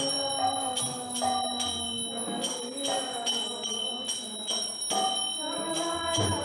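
Devotional kirtan music for arati: voices singing a held, melodic chant over a ringing metal bell, struck again about twice a second.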